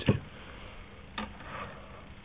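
Quiet handling of small items on a table: one short, light tap about a second in, over a faint steady hum.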